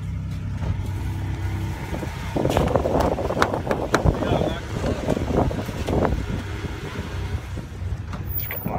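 Car running with a steady low hum inside the cabin; from about two seconds in, a busy run of rustling, clicks and knocks as people move about in the car.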